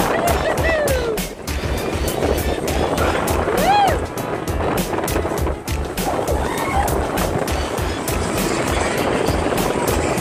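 Seven Dwarfs Mine Train roller coaster car running along its steel track, its wheels clattering rapidly over the rails with a pulsing low rumble. Riders let out short rising-and-falling whoops, one at the start and another about four seconds in.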